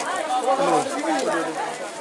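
Indistinct talking: several voices overlapping in a busy shop.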